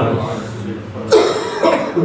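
A man coughs twice, about a second in, the second cough weaker than the first.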